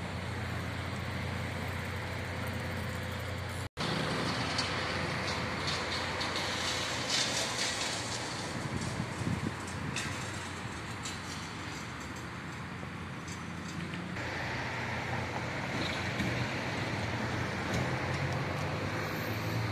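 City road traffic: a steady wash of passing cars and buses on a nearby street. The sound cuts out for an instant about four seconds in.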